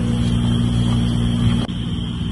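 A steady low mechanical hum with a thin high steady tone over it. Both break off abruptly near the end, where the sound changes.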